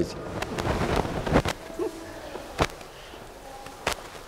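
A pause in a sermon: quiet church room tone with faint distant voices and three sharp clicks.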